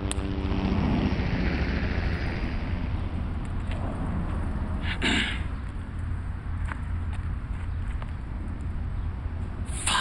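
Steady low rumble of road traffic, with one short, sharp sound about halfway through.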